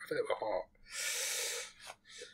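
A brief bit of a man's voice, then a loud breathy breath lasting about a second, a gasp of delight at a cute dog.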